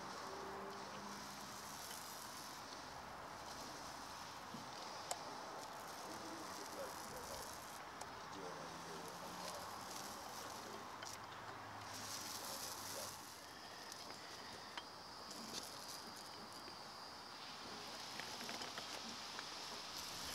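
Faint, crackly hiss of a paint roller spreading thick blacking over a narrowboat's steel hull, coming and going with the strokes.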